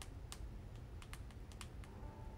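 A quick, irregular run of faint light clicks, about nine in two seconds, over a low steady hum.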